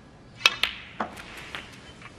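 Snooker shot: the cue tip striking the cue ball and snooker balls clacking against each other, four sharp clicks in about a second, the first the loudest.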